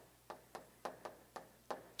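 Chalk tapping and scraping on a chalkboard as words are written: a handful of faint, short taps, one per stroke.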